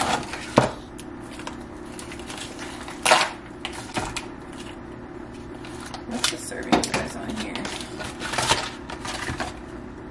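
Plastic food wrapping and a cardboard box being handled and peeled open: rustling, with several sharp crinkles and crackles spread through.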